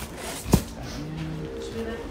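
A single sharp thump about half a second in, as a stack of comic books is set down into a cardboard comic box, over faint background voices and music.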